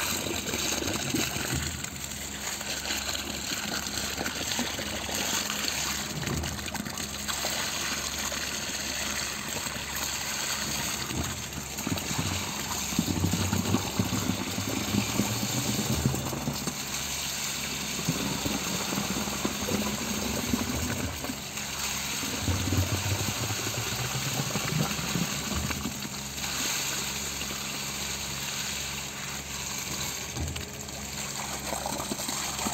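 Wet concrete gushing steadily out of a concrete pump's hose into a foundation beam trench, with the pump's engine running underneath.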